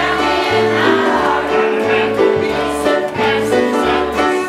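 Children's choir singing a gospel song together over a steady instrumental backing with a bass line.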